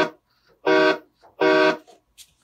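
Sound-chip train horn played through a speaker, sounded by tugs on a pull cord: the end of one short steady chord blast, then two more of about half a second each, evenly spaced.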